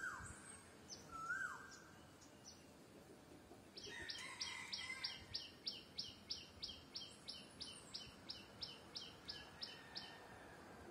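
Wild bird calls: a short call that rises and then drops, repeated about every second and a quarter at the start, then from about four seconds in a rapid series of sharp, high notes, about three a second.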